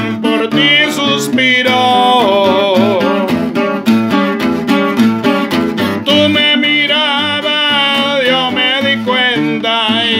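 A man singing a romantic Spanish-language song, accompanying himself on strummed acoustic guitar.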